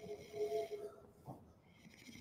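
A sleeping person snoring faintly, a drawn-out rumble with a couple of swells.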